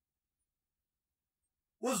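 Dead silence with no room tone, then a man's voice starts speaking abruptly near the end.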